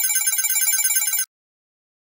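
Electronic intro sound effect: a high, rapidly trilling ring like a telephone bell, cutting off suddenly a little over a second in.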